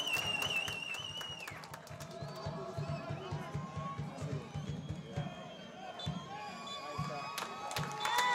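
A referee's pea whistle blown in one long warbling blast that cuts off about a second and a half in, followed by faint stadium crowd murmur and a few sharp knocks near the end.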